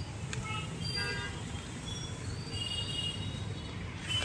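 Steady low rumble of distant road traffic with a few short, flat horn toots, one about a second in and more around the middle.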